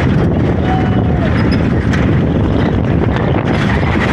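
Loud, steady road and wind noise from riding on the back of a moving utility truck, with the truck's engine running underneath.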